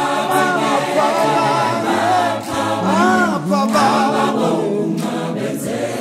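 A choir singing a gospel song a cappella, many voices in harmony with long, gliding sung notes.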